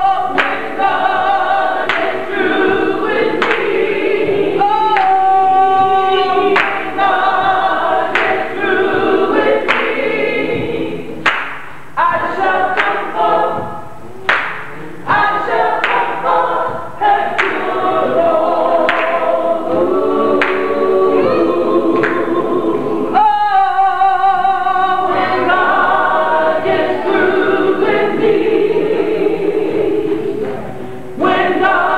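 A woman singing a gospel song a cappella, with other voices of the congregation singing along.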